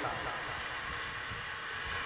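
A short pause in speech: only a steady background hiss and hum from the microphone and sound system, with no distinct event.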